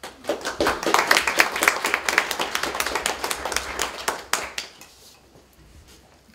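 Audience applause at the end of a poetry reading: many hands clapping for about four and a half seconds, then dying away.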